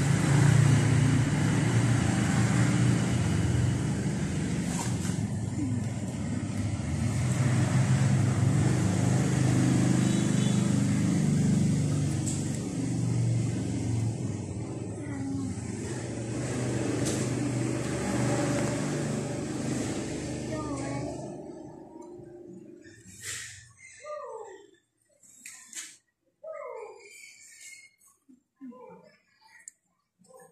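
A vehicle engine running steadily and loudly nearby as a low rumble, fading away after about twenty seconds. Near the end, a few short high calls falling in pitch, from a baby monkey.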